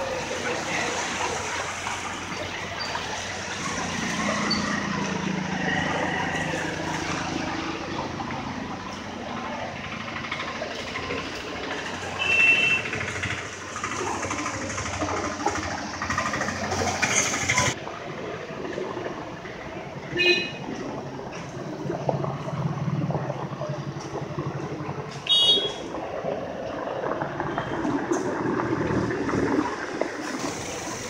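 Street traffic noise from passing vehicles, with three short vehicle-horn toots spread through.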